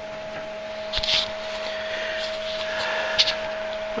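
A variable-speed DC motor on a knife-sharpening machine runs steadily, spinning its wheels with an even hum. There is a light click about a second in and another near the end.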